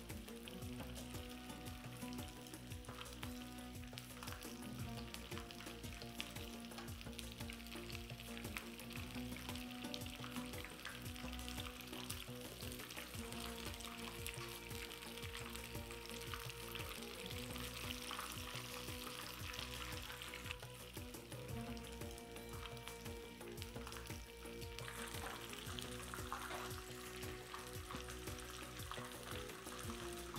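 Phyllo-pastry triangles (briwats) sizzling steadily as they shallow-fry in hot vegetable oil in a frying pan.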